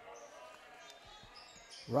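Basketball being dribbled on a hardwood gym floor, faint bounces under quiet gym ambience; a man's voice comes in near the end.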